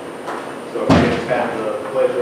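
A door shutting with a single heavy thud about a second in, heard in a large room with people talking.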